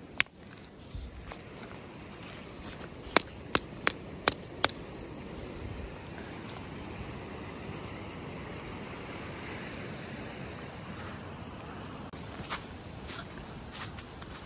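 A mountain river flowing: a steady rushing of water. A few sharp clicks or knocks come between about three and five seconds in, and two more near the end.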